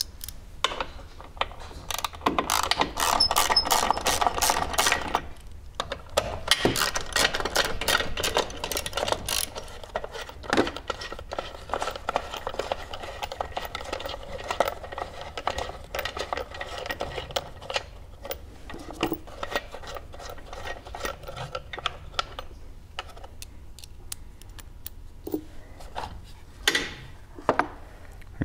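A small power driver buzzing in two runs of a few seconds each as it unscrews the battery box cover's fasteners. Scattered clicks and knocks of the plastic cover being worked loose and lifted off the battery follow.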